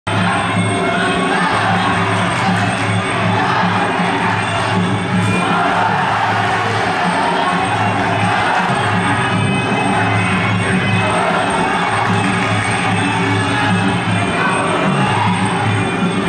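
Traditional ringside fight music for a Kun Khmer bout plays steadily, with crowd noise and cheering from the arena beneath it.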